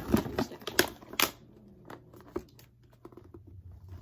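A paper gift bag being handled, its stiff paper crackling and crinkling in a run of sharp crackles over the first second or so, then only faint rustles.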